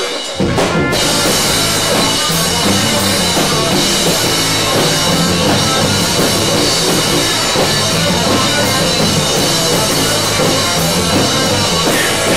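Live rock band playing loud without vocals: drum kit to the fore over a repeating bass line. There is a brief dip in level right at the start.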